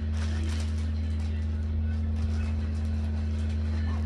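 Plastic packaging and packs of wipes rustling as they are handled and stuffed into a canvas shoulder bag, over a steady low hum.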